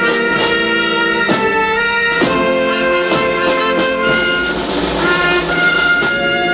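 Brass band playing a slow march: held brass chords that change every second or two, over a soft beat about once a second.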